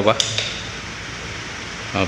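Electric stand fan running: a steady whir of air from the spinning blades over a faint motor hum. The fan head is swinging again after a repair of its oscillation mechanism.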